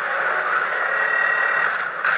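Action-film trailer sound effects played back: a steady rushing noise, with a thin high tone held through the middle second.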